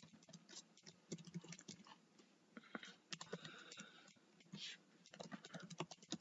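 Faint typing on a computer keyboard: irregular single keystrokes with short pauses between them.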